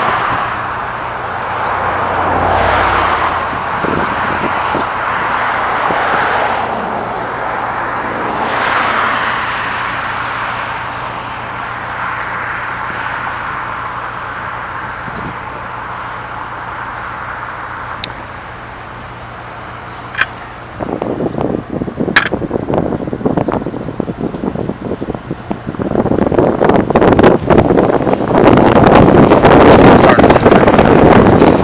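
Road traffic: passing vehicles swell and fade over a steady low hum. Near the end a truck passes close and loud, with rough crackling that sounds like wind buffeting the microphone.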